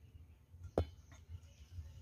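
A single sharp click a little under a second in, over a faint low rumble.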